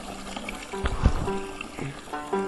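Background music with held notes, and a low bump from the camera being handled about a second in.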